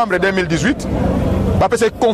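A man speaking in a street, with the low rumble of a passing motor vehicle beneath his voice around the middle.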